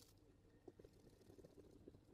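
Near silence, with faint, soft, irregular sounds of a wooden stick stirring epoxy resin in a silicone mixing cup.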